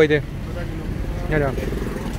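Short snatches of a man's speech over a steady low background rumble.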